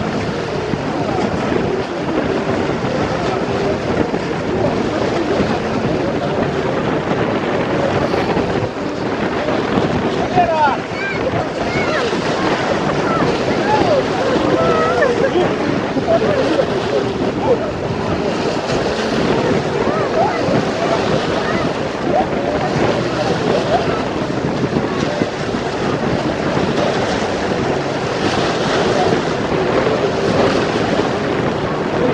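Choppy, wind-driven river waves splashing and breaking against the shore, with wind buffeting the microphone.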